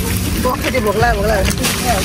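A person talking, over a steady low rumble of wind on the microphone.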